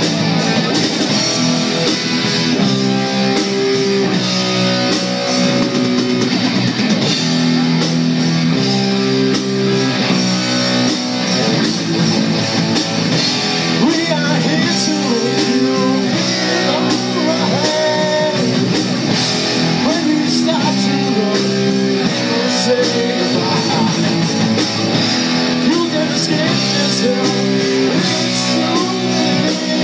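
Live rock band playing loudly: electric guitars, bass guitar and drum kit, with held guitar chords changing every second or two over the drums.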